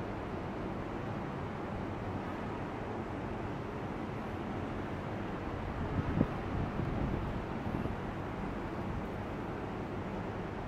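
Steady outdoor background noise with no distinct source, with a brief faint thump about six seconds in.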